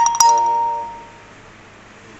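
Two sharp metallic strikes about a fifth of a second apart, each ringing out like a bell and dying away within about a second.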